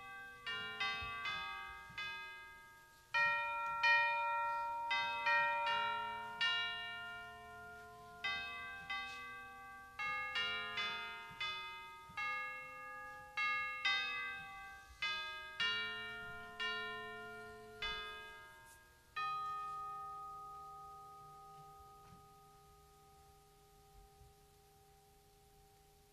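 Chimes playing a slow melody of struck, bell-like notes, each ringing and fading. About three-quarters of the way through, a last note is struck and left to ring until it dies away.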